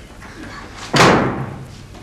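An interior door flung open, with a single loud bang about a second in.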